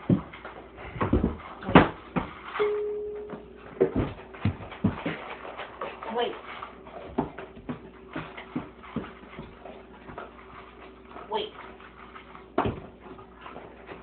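A young dog whimpering and whining eagerly while it waits to be fed, with one held whine about three seconds in. Its paws click and scrabble on the tile floor as it jumps about.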